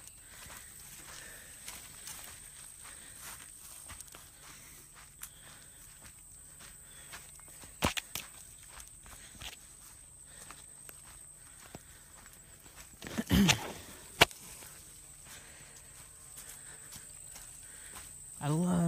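Footsteps of a person walking along a dirt woodland path strewn with leaves, in a steady soft rhythm. There is a sharp snap about eight seconds in, and a louder thump followed by another snap a little after the thirteen-second mark.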